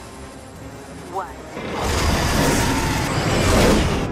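A film sound effect of an incinerator burn igniting: a rush of flame that starts about halfway through, swells, and is loudest just before the end, over film music. A short synthetic computer voice says "Warning" just before it.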